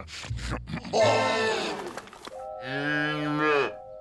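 Cartoon moose calling twice: a short rough bellow about a second in, then a longer, pitched lowing call that rises and falls in the second half.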